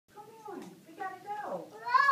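A high-pitched voice in short vocal phrases with gliding pitch, growing louder near the end.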